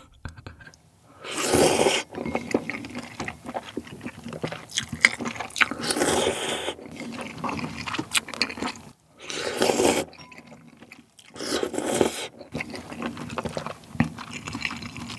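A person slurping broth-soaked spicy cold buckwheat naengmyeon noodles, four loud slurps spread through, with wet chewing between them.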